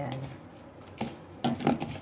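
A hand squeezing and kneading crumbly cookie dough in a plastic bowl, with light taps against the bowl about a second in and again shortly after.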